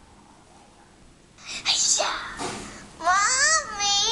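A young child's voice played back through a device speaker: after a quiet second, a breathy burst, then a high, sing-song phrase with gliding pitch near the end.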